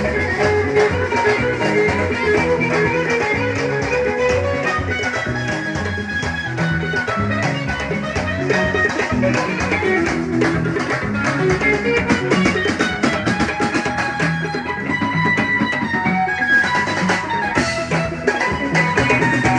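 Live band music: an electric guitar plays a lead line over a drum kit beating a steady rhythm.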